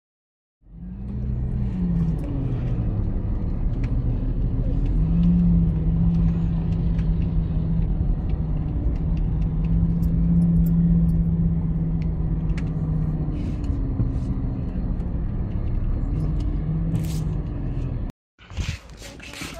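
Car engine and road noise heard from inside the cabin while driving slowly, starting about a second in; the engine hum rises and falls a little at first, then holds steady.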